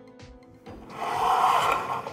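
A rubbing, scraping noise from the model kit's parts being handled and moved on the work mat. It starts a little over half a second in and lasts more than a second, over faint background music.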